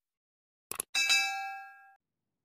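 Sound effect for a subscribe-button animation: two quick mouse-style clicks, then a bright bell ding with several ringing pitches that fades away over about a second.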